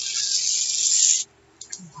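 Sheets of paper sliding and rubbing against each other and the journal page, a loud hissing rustle that stops suddenly a little past halfway.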